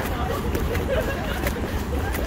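City street ambience: a steady low rumble of traffic with faint voices of passers-by mixed in.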